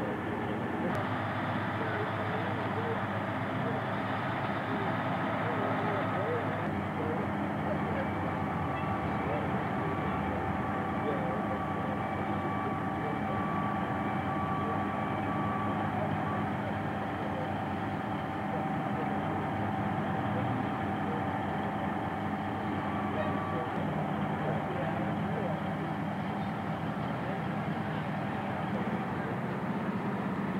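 Heavy machinery running steadily, a continuous engine drone at an even level, with indistinct voices under it.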